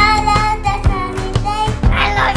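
A children's song: a child singing over backing music with a steady beat.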